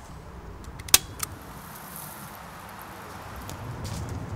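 Low background rumble with two sharp clicks about a second in, a quarter second apart, the first much louder.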